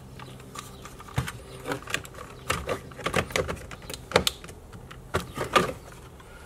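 Irregular plastic clicks and rustling as a wiring harness and its connectors are pushed back into the door-panel switch cavity of a Chevy Silverado and the plastic switch bezel is handled.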